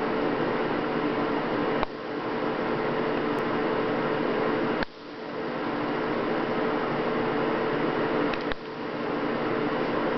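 A steady mechanical hum with a hiss, holding a few low tones. Three times, about 2, 5 and 8.5 seconds in, it dips with a faint click and swells back up.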